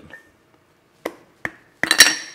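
A glass fermentation weight knocking against the inside of a glass mason jar as the jar is tipped to get it out: two light clinks about one second in and half a second apart, then a louder clink near the end that rings briefly.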